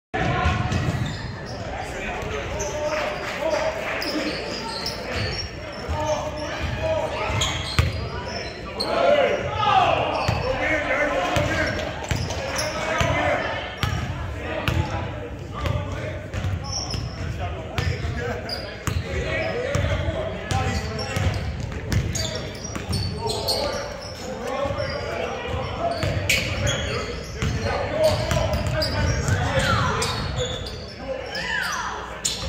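A basketball being dribbled on a hardwood gym floor, its bounces thudding again and again through a live game, with players' voices calling out and echoing in the large gym.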